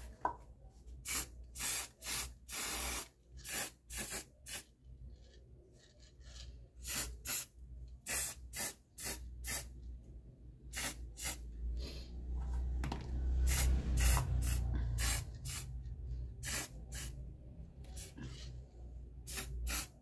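Aerosol spray-paint can sprayed in many short hissing bursts, with one longer spray about three seconds in. A low rumble sits underneath for a few seconds past the middle.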